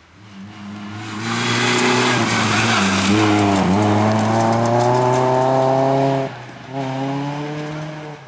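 Hatchback rally car passing at speed on a gravel stage: the engine note dips twice as the driver lifts, then climbs steadily under full throttle over a loud hiss of gravel from the tyres. Near the end the engine cuts off abruptly for a moment, then picks up again and fades as the car pulls away.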